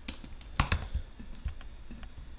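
Keystrokes and clicks on a computer keyboard: a quick run of taps in the first second, the loudest pair a little over half a second in, then a few scattered lighter clicks.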